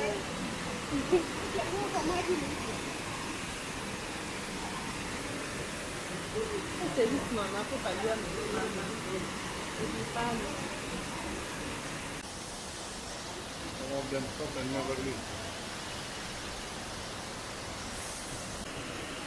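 Steady rush of a waterfall pouring onto rocks, with voices of people chatting nearby now and then. About two-thirds of the way in, the rushing becomes slightly quieter.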